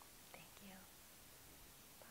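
Near silence: room tone, with a brief faint whisper from a woman's voice about half a second in.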